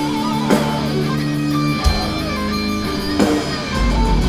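A thrash metal band playing live through a PA: electric guitars hold heavy chords over bass, with a sharp drum-and-cymbal hit about every 1.3 seconds and no vocals.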